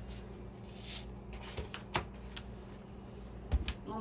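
Dry breadcrumbs shaken from a canister into a plastic mixing bowl: a short rustling hiss about a second in, followed by a few light clicks. Near the end comes a louder knock as the canister is set down on the counter.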